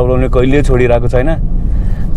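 A person's voice, talking or singing in the car, stopping briefly near the end, over the steady low drone of the car's engine and road noise inside the cabin.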